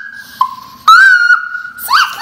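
A young child's loud, high-pitched squeals: shrill held notes, one trailing off at the start, a second about half a second in that steps up in pitch, and a third rising in near the end.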